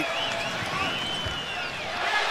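Basketball sneakers squeaking on a hardwood court: a few quick squeaks at the start, then one longer squeak about a second long, over a steady arena crowd murmur.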